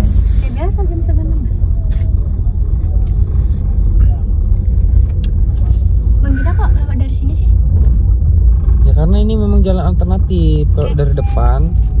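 Steady low rumble of a car driving, heard from inside the cabin, with brief bits of talk over it about three-quarters of the way through.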